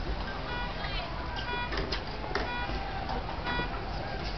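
A car alarm going off in a repeating cycle: short chirps of several steady tones about twice a second, with a falling sweep about a second in, over crowd chatter.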